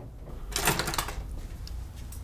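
A brief rustle and clatter of small objects being handled, about half a second in and lasting about half a second, over faint room noise.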